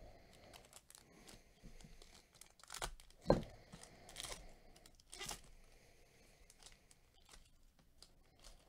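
Foil wrapper of a Bowman Chrome trading-card pack torn open, with crinkling of the foil. A few short, sharp rips come between about three and five seconds in; the loudest is just after three seconds.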